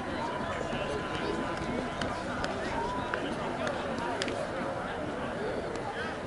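Indistinct chatter of several voices of players and onlookers around a softball field, with no clear words and a few sharp clicks in the middle. A faint steady high tone sounds for about the first two seconds.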